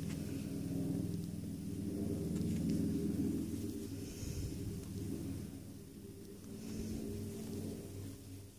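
A steady low hum, with faint soft rustling from yarn and a crochet hook being handled close to the microphone.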